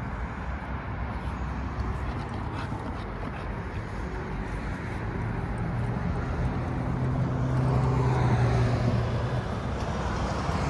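A motor vehicle going by, its low engine note swelling in the second half and fading near the end, over a steady outdoor background.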